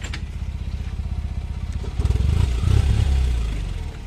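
Small pickup truck's engine running with an even low pulse, revving up under load about halfway through and easing off near the end.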